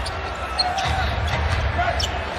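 A basketball being dribbled on a hardwood court, over the steady murmur of an arena crowd.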